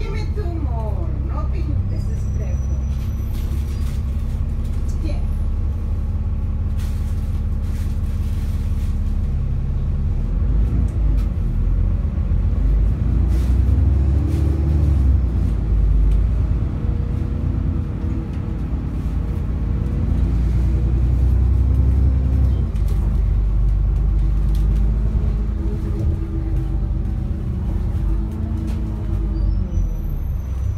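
Cabin sound of an Alexander Dennis Enviro400 double-decker diesel bus under way: a steady low engine and road drone that climbs in pitch between about ten and fifteen seconds in as the bus accelerates, then settles into a loud steady run.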